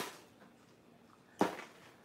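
Two brief clatters of empty plastic toy capsules and wrappers being handled: a light one at the start and a louder one about a second and a half in.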